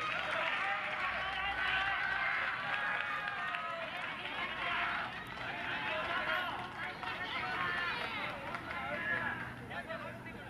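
Many voices shouting and calling out at once, overlapping, the typical calls of players and spectators at a baseball game after a double play; they ease somewhat near the end.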